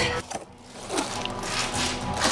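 Cardboard box being opened and its contents handled: a soft rubbing and scraping, growing after about half a second.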